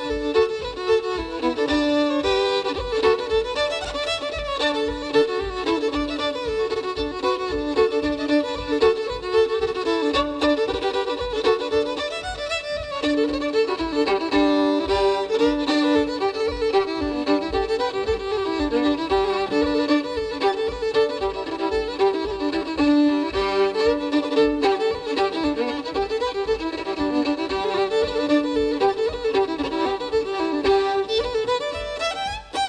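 Irish traditional fiddle playing a reel, a fast unbroken run of bowed notes, with a steady low beat of accompaniment underneath.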